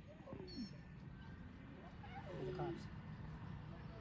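Lions calling softly to each other: faint, short calls that fall in pitch, one near the start and a longer run of calls about two seconds in.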